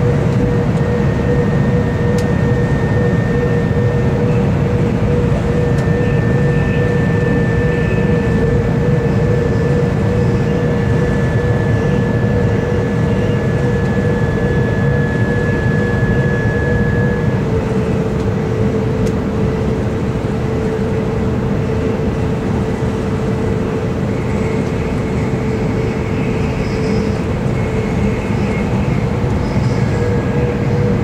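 Inside a V/Line VLocity diesel multiple unit running at speed: a steady rumble of wheels on the track and the train's running noise, with a steady whine beneath it. A thin higher tone over the top stops a little past halfway.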